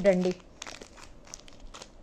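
Small plastic jewellery pouches crinkling as they are handled, in a few short, scattered rustles.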